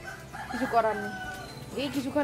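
A rooster crowing once: a single drawn-out call that rises and then holds steady for about a second.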